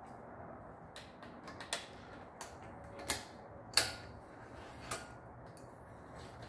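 Irregular metallic clicks and light creaks from a threaded-rod headset press on a bicycle head tube as its nut, washers and wrench are worked, the loudest click about four seconds in.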